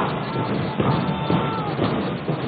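Marching band playing on parade: held wind notes over a steady drum beat.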